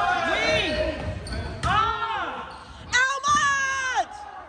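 Sneakers squeaking on a hardwood gym floor, several drawn-out squeaks that rise and fall in pitch, with a couple of sharp hits from a volleyball being played, echoing in a large gym.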